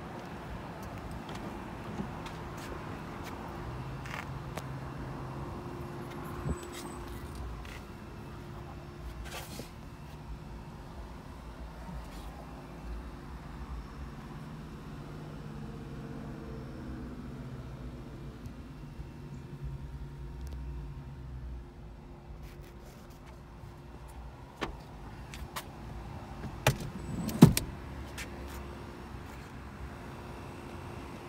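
Steady low hum from a parked 2008 Scion tC, with scattered clicks and a sharp knock near the end.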